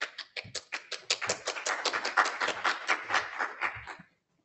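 Small audience applauding, the individual claps distinct.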